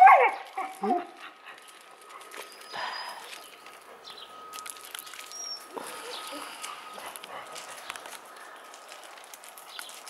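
A dog whining, with a few short high whimpers in the first second. After that come only faint scuffs of steps on gravel.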